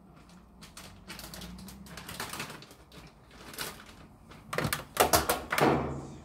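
Things being handled on a kitchen counter: a few light knocks, then a quick run of sharp clicks and clatters in the last second and a half.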